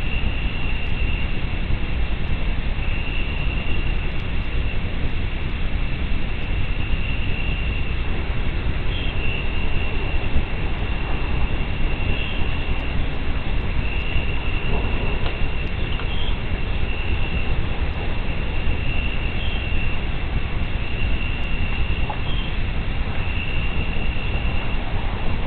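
Steady low rumbling noise, with night insects singing a high, pulsing note that comes and goes every second or two.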